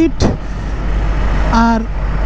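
Suzuki Gixxer SF motorcycle ridden at about 46 km/h in traffic, heard from a helmet camera as a steady low rumble of wind and engine, with a bus running alongside.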